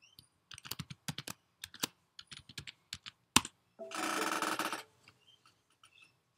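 Computer keyboard typing a password: a quick run of key clicks ending in one sharper, louder key press about three seconds in. Half a second later comes a brief noisy burst about a second long.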